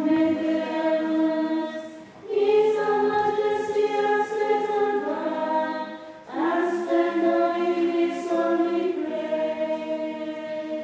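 Choir singing a hymn in long held chords, with short breaks between phrases about two and six seconds in.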